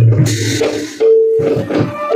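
Live Bhaona accompaniment music: a deep drum stroke with a cymbal-like crash at the start, then a held melodic tone about a second in.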